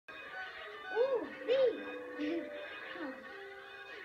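Cartoon soundtrack music heard through a television's speaker. It has two loud swooping, arching notes about a second in and again half a second later, and smaller sliding figures later on.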